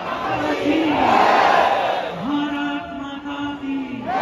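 A large crowd of devotees chanting and shouting in unison. The voices swell loudest about a second in, then settle into a long held note.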